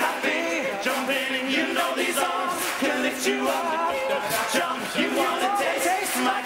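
An all-male a cappella group singing live in several parts over a sharp, regular percussive beat.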